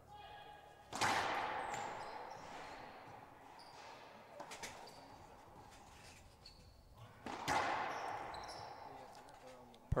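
Racquetball rally in a walled court. A hard racquet hit cracks about a second in and another about seven seconds in, each echoing round the court and dying away slowly, with a few lighter ball hits and bounces between them. The second hard hit is a winning shot down the line.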